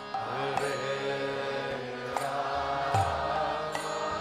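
Kirtan music: a harmonium holding sustained chords under a long sung melodic line, with a few sharp cymbal strikes and a deep drum thump about three seconds in.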